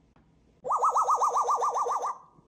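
African grey parrot mimicking a police siren: a fast rising-and-falling warble, about seven swoops a second, starting just over half a second in and lasting about a second and a half.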